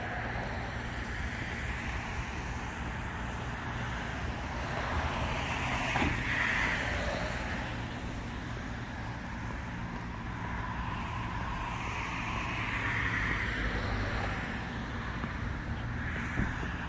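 Road traffic passing on a wet road, tyres hissing, over a steady low wind rumble on the microphone. Passing vehicles swell louder about five seconds in and again near twelve seconds.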